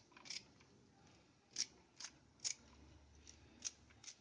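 Fresh coriander stems being snapped off by hand: a series of short, crisp snips, faint and a second or so apart.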